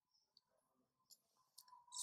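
Near silence, with a few faint computer mouse clicks in the second half.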